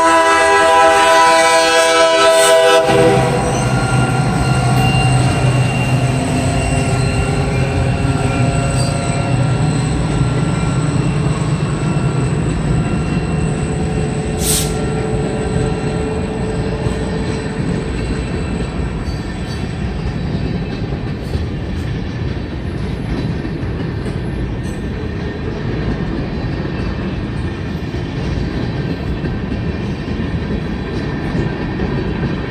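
A CSX diesel locomotive's horn sounding a chord that cuts off about three seconds in, then the locomotive passing and a long string of new tank cars rolling by with steady wheel-on-rail noise. A single sharp bang about halfway through.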